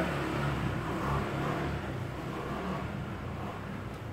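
Low rumble of a road vehicle's engine, gradually fading.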